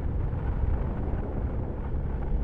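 Steady low rumble of a motorcycle riding along a road, with wind rushing over the camera's microphone.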